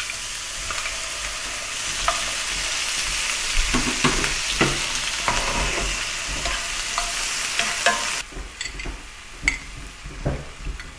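Raw shrimp sizzling in hot oil in a frying pan just after being dropped in, with scattered light clicks. The loud sizzle drops off suddenly about eight seconds in, leaving a quieter crackle.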